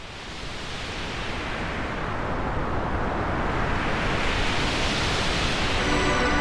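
A swelling rush of noise, a title-card transition sound effect, that fades in from silence and grows steadily louder.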